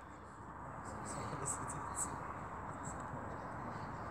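Quiet outdoor background: a faint steady hiss with a few faint, short high ticks in the middle.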